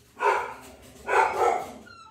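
A dog barking twice.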